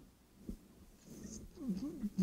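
A short pause in speech with faint room noise, then a faint voice starting up near the end.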